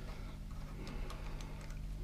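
Light, irregular clicks of a ratcheting T-handle tap wrench as a tap is backed out of a freshly tapped hole in cast iron, over a faint steady hum.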